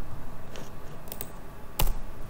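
Computer keyboard keystrokes: a few scattered key presses, the loudest one near the end.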